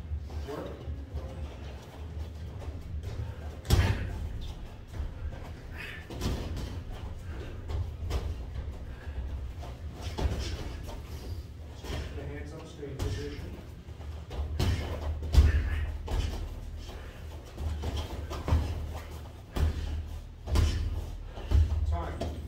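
Boxers sparring: gloved punches landing with dull thuds and slaps at irregular intervals, a few sharper hits standing out.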